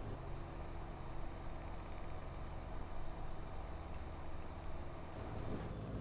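AMD Radeon R9 290X reference blower-style cooler fan running at 25% speed: a steady, fairly quiet whooshing hum with a few low steady tones. Not too bad, a noise you could listen to.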